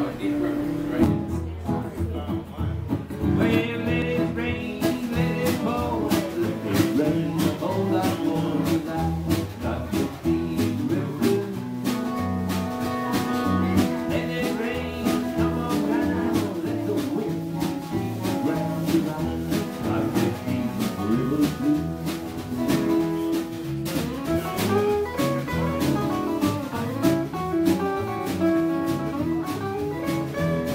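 Small acoustic band playing an upbeat blues: strummed and picked acoustic guitars over a bass line and a steady drum beat.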